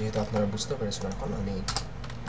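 Computer keyboard keys clicking in a few separate taps, the loudest pair near the end, under low muttered speech.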